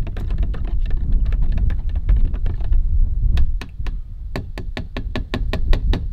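Metal shaft of a paddle mixer, turned by hand, clicking and knocking rapidly against the side of a plastic measuring cup while stirring a liquid mix, over a steady low rumble. The clicks come thick at first and then space out to about five a second in the second half.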